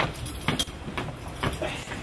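A man's footsteps as he walks briskly, a sharp step about twice a second.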